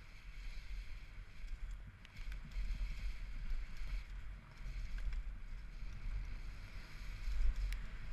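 Downhill mountain bike running fast down a dirt trail, heard through a GoPro: a heavy, surging wind rumble on the microphone over tyre and trail noise, with a few sharp clicks and rattles from the bike.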